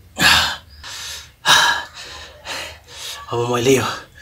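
A man gasping, taking about four sharp breaths through the open mouth against the burn of triple-spicy noodles, with a short vocal sound near the end.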